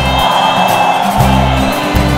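Live gospel praise band playing, with held bass notes and sustained chords.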